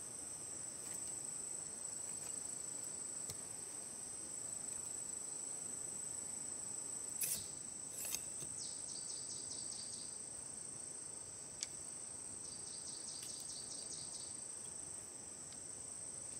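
Steady high-pitched insect chorus of the forest. A couple of sharp knocks a little past the middle, one more a few seconds later, and twice a quick run of high chirps.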